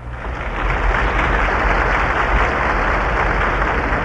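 A large stadium crowd applauding: a dense wash of clapping that swells over the first second and then holds steady, heard on an old reel-to-reel recording with the top end cut off.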